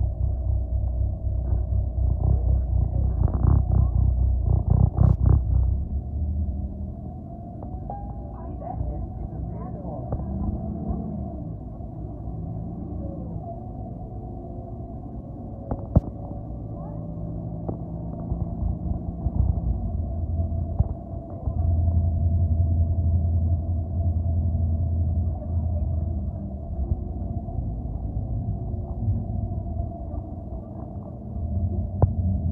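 City transit bus heard from inside while driving: a deep engine rumble with a steady whine above it. The rumble is heavy at first, eases off after about six seconds, and swells again about two-thirds of the way through as the bus pulls away. A single sharp click comes around the middle.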